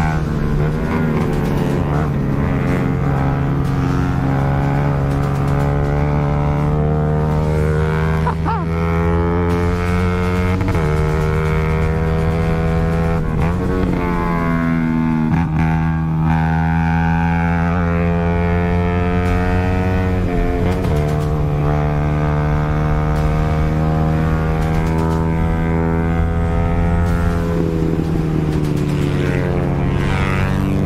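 Yamaha R15's small single-cylinder engine running hard under way, a steady high note whose pitch drops and climbs again several times as the rider changes gear.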